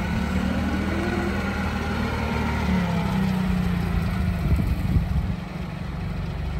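LP-powered Nissan 50 forklift engine running steadily as the forklift drives and turns, its pitch shifting slightly midway, with a few light knocks about five seconds in.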